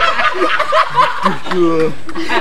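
People laughing and chuckling in short bursts, mixed with bits of voice.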